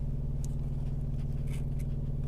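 Semi truck's diesel engine idling, a steady low hum, with a few faint clicks and scrapes of the paper plate being handled.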